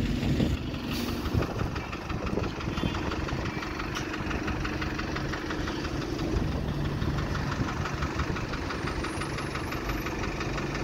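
Diesel engine of an Alexander Dennis Enviro single-deck bus idling at the stop, a steady drone whose pitch drops a little past halfway, with street traffic around it.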